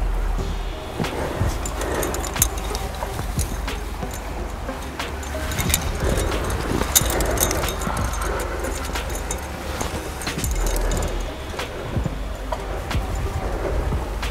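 Music, over a steady low rumble and scattered sharp clicks.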